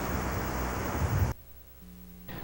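Steady hiss with a low mains hum from the recording's background noise between narrated lines. It drops off abruptly a little over a second in, leaving only a faint hum.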